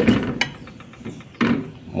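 A silicone spatula stirring chicken gizzards in a metal pressure cooker pot. There is a sharp knock at the start, then a run of light clicks and scrapes.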